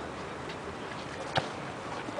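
Steady outdoor hiss with one sharp knock about one and a half seconds in, the sound of a football being kicked on a concrete court.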